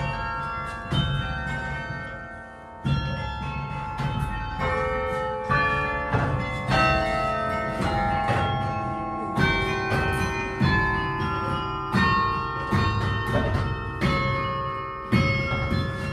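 Carillon bells played in a melody, each struck note ringing on and overlapping the next, with a brief pause about two to three seconds in.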